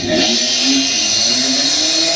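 Drag-race car engines revving hard at the start line, the pitch rising and falling over a loud steady hiss.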